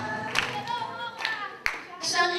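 A group singing a song with hand claps; a few sharp claps stand out over the singing, the loudest near the end.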